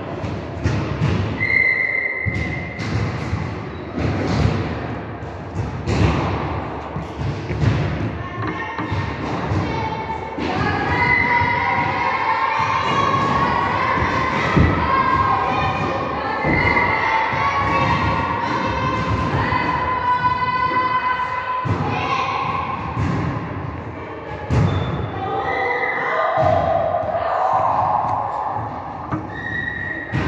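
Repeated thuds and impacts echoing in a large hall, often several a second, as from the run-ups and landings of high-jump practice.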